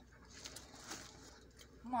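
Faint rustling with a few light clicks, low-level handling noise between exclamations.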